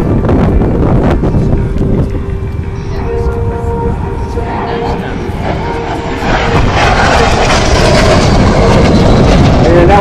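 Jet noise from an L-39 Albatros trainer's single turbofan as it makes a high-speed pass, a loud rushing rumble that dips and then swells louder over the second half.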